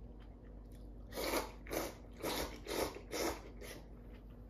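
Tsukemen noodles slurped from the dipping soup: a run of six short slurps about two a second, starting about a second in, the last one weaker.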